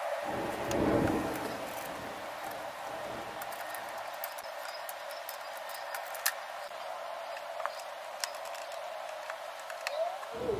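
Light clicks and taps of a hand tool and plastic clips on a Vespa scooter's headset, scattered over a steady hiss, with a low rumble about a second in.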